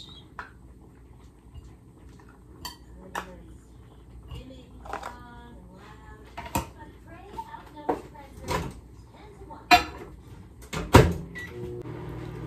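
Kitchen handling sounds: metal tongs, a plate and plastic lunch containers knocking and clicking on the counter as chicken is moved onto a plate, in scattered single knocks with the loudest about eleven seconds in.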